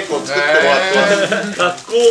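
Men's voices talking and exclaiming, one drawn-out voice wavering in pitch near the middle.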